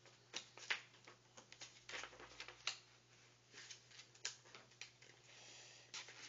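A sheet of paper being folded and creased by hand on a tabletop: faint, irregular rustles and soft taps.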